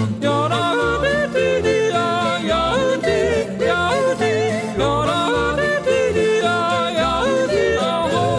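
A gospel song with a singer yodeling, the voice leaping quickly between low and high notes over instrumental backing.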